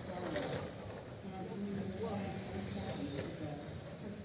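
Indistinct voices of people talking, with a steady low hum underneath.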